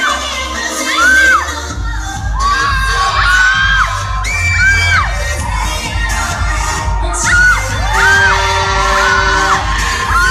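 A crowd shrieking and cheering with high, drawn-out shouts over loud pop music, whose heavy bass beat comes in just under two seconds in.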